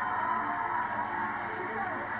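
Game-show background music playing from a television, muffled and dull as if picked up from the set's speaker.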